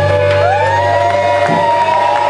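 Live blues band: harmonica playing long notes that bend up and down in pitch over electric guitar, bass and drums. The low bass notes stop with a single hit about one and a half seconds in.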